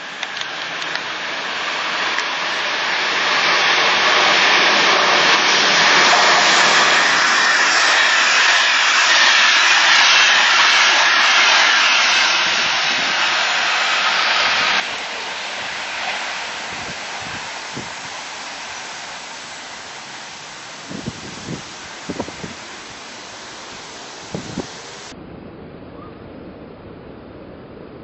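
Electric passenger train with double-deck coaches passing at speed: a loud, steady rush of wheels on rails that builds over the first few seconds and holds. After a sudden drop the noise is quieter and fades slowly, with a few sharp clicks.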